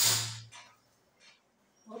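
A short scraping rustle at the start, fading within half a second, as a metal ruler is slid off the fabric and table, followed by a few faint handling sounds.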